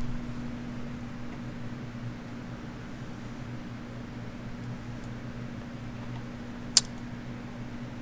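Steady low hum of a running fan or electrical equipment, with a single sharp click near the end.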